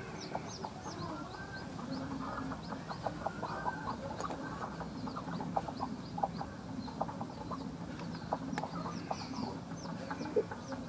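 Broody hen sitting on a clutch of eggs, clucking in short low calls. Quick, high chirping goes on steadily in the background.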